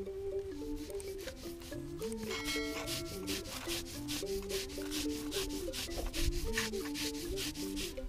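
Raw sesame seeds being ground on a traditional grinding stone: a hand-held upper stone rubbed back and forth over the seed bed, stone grating on stone in a quick, even rhythm of strokes. Soft background music plays underneath.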